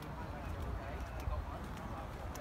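Light, irregular footsteps on pavement from the person carrying the camera, over a low rumble on the microphone, with faint indistinct voices in the background.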